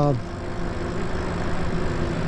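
Wind and road noise from riding an electric bike, with a faint steady hum underneath.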